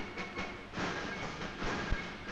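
A large crowd cheering and shouting as a dense, even roar, with hiss and crackle from an old film soundtrack.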